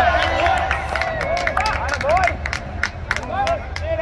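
A small group of people shouting and cheering in overlapping calls, with sharp hand claps scattered throughout, over a steady low hum.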